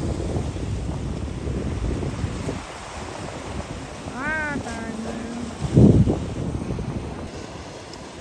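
Ocean surf washing and breaking against rocky shore ledges, with wind buffeting the microphone. A short, high, arching call sounds just past four seconds in, and a sudden loud low burst of noise comes just before six seconds.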